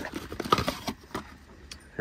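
A few light clicks and taps of a brass valve block and hand tools being handled and picked up, the sharpest about half a second in, then fainter ticks.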